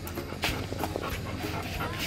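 A Labrador retriever panting during play, with a single sharp tap about half a second in.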